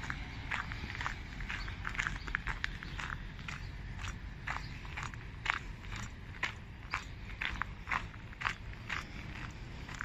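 Footsteps on gravel at a steady walking pace, about two steps a second, over a low steady rumble.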